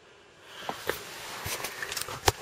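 Near silence at first, then rustling and handling noise that builds about half a second in, with a few light clicks, as the camera and the person holding it move about in the car's cabin.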